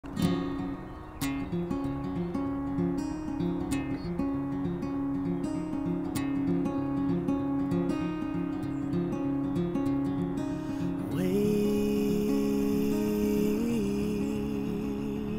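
Steel-string acoustic guitar playing a picked pattern of notes as a song intro. About three-quarters of the way through, a man's wordless sung note comes in over it and is held with a slight waver.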